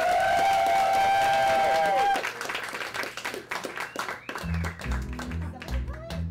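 Audience and hosts clapping in applause. Over the first two seconds a single long, steady high note is held, and a rhythmic low bass line of music comes in about four and a half seconds in.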